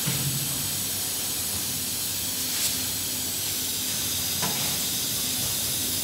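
Steady hiss and low hum of running workshop machinery, with two faint clicks partway through.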